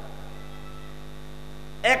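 Steady electrical mains hum from a microphone and sound system, heard in a pause between spoken phrases. A man's voice comes back in just before the end.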